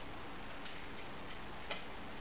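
A few scattered light clicks and taps at uneven intervals over a steady hiss; the clearest click comes near the end.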